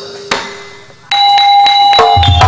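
A short knock. About a second in, a bronze gamelan metallophone key is struck and rings on with a clear bell-like tone. It is the opening note of a gamelan piece, with drum and further struck notes following.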